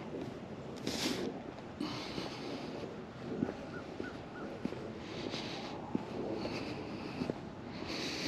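Wind blowing over the microphone at a lakeshore: a steady faint hiss that swells into louder gusts a few times, with three faint short peeps a little before halfway.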